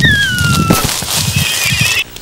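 An animal's single high call sliding down in pitch for most of a second, followed by a fainter wavering high tone near the end, over a hissy background.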